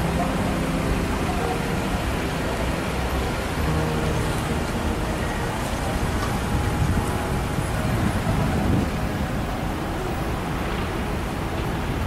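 Busy city street traffic: cars passing and idling in slow, heavy traffic, a steady dense wash of engine and road noise.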